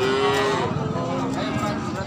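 Goats bleating: one long call with many overtones near the start, then a lower, shorter call about a second in, over background chatter.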